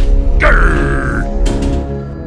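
Background music with a heavy bass. About half a second in, a short grunt falls in pitch and fades within about a second.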